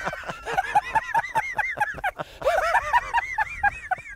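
Men laughing hard: two long runs of rapid, high-pitched "ha-ha-ha" pulses, about seven a second, with a short break about two seconds in.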